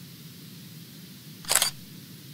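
Logo-sting sound effect: one short, sharp burst of noise about one and a half seconds in, over a faint steady low hum.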